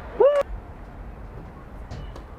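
A single short, high-pitched cry of a person's voice, rising then falling, about a quarter of a second in, cut off by a sharp click. A few faint clicks follow near the end.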